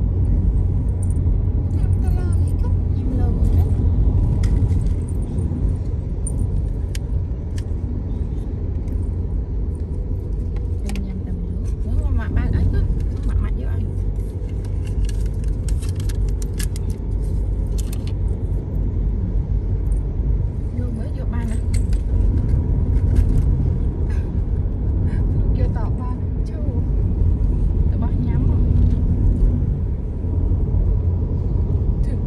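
Steady low rumble of a car's tyres and engine heard from inside the cabin while driving, with scattered light clicks and rattles, most of them around the middle.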